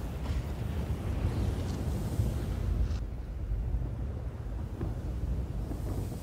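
Low, steady rumble of wind in a film's ambient sound, with the higher hiss above it falling away about three seconds in.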